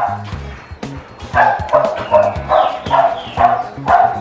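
A dog yipping and barking in a quick run of short, high calls, about eight of them, starting a little over a second in. Some calls slide down in pitch.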